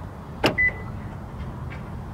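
2021 Hyundai Tucson's central door locks working from the keyless-entry button on the door handle: one sharp click of the lock actuators about half a second in, followed at once by a short, high beep.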